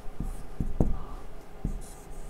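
Marker pen writing on a whiteboard: a few light taps of the tip and short scratchy strokes, the last one a brief hiss near the end.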